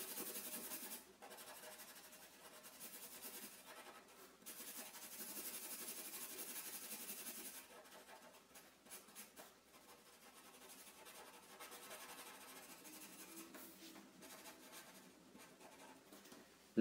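Faint scratching of a black Sharpie felt-tip marker on paper as an area is coloured in solid. The strokes are steadier in the first half and become lighter and more scattered after about eight seconds.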